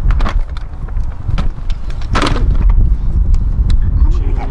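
Knocks and scrapes of a Henry vacuum cleaner's plastic body being forced into a tightly packed car, over a steady low rumble. There is a louder scrape about two seconds in.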